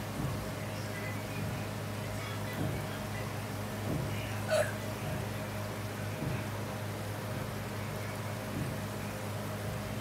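Hot oil sizzling in a wok as fritters deep fry, over a steady low hum. A brief sharp clink about four and a half seconds in.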